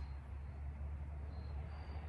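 Quiet outdoor background: a steady low hum under a faint hiss, with no distinct sound event.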